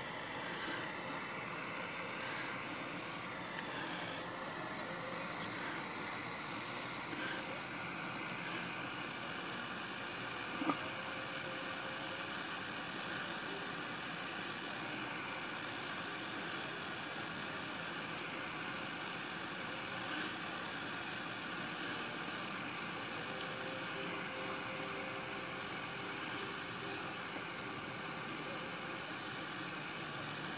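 Small handheld gas torch burning with a small blue flame, a steady hiss, as it heats a typewriter type slug for resoldering. One faint click about ten seconds in.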